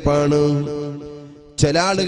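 A man chanting in a drawn-out, melodic voice: one long held phrase that fades away about a second and a half in, then a new phrase begins.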